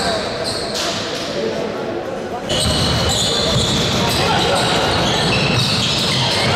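Live basketball game sound in a large gym: a ball bouncing on the hardwood court, with voices echoing around the hall. The sound jumps louder and fuller about two and a half seconds in.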